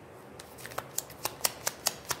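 Tarot cards being shuffled by hand: a rapid, even run of sharp clicks, about five a second, beginning about half a second in.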